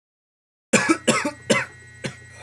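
Silence, then about two-thirds of a second in a man coughs three times in quick succession, clearing a mouthful of food. A faint steady electrical hum runs under the coughs.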